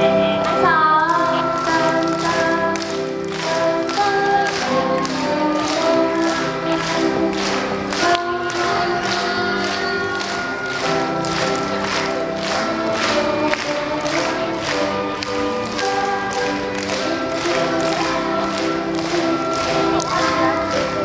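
Children's chamber ensemble of violins, cellos and flutes playing a piece together in sustained, pitched notes, over a steady tapping beat about twice a second.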